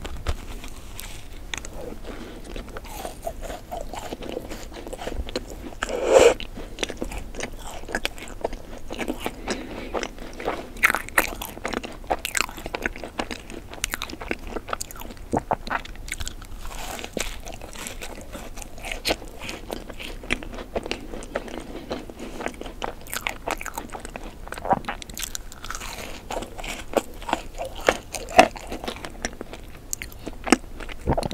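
Close-miked eating of a macaron: bites crunching through the crisp shell, then chewing with many small mouth clicks. One louder bite comes about six seconds in.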